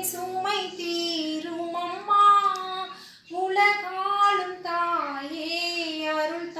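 A woman singing a Tamil hymn to Mary solo and without accompaniment, in long held notes that glide from pitch to pitch, with a short breath break about three seconds in.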